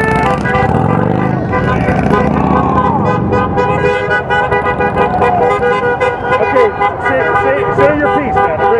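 Several car horns honking at once, their steady tones overlapping, over road traffic and people's voices.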